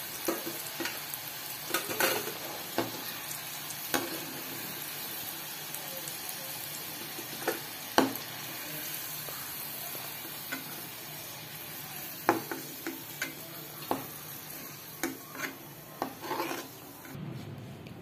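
Yam cubes deep-frying in hot oil in a metal kadai, a steady sizzle, with scattered sharp clinks of a metal spoon as the fried pieces are scooped out.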